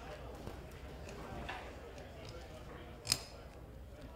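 A bayonet being drawn and fitted onto the muzzle of a Pattern 14 rifle. There are a few faint metal ticks and scrapes, then one sharper click about three seconds in.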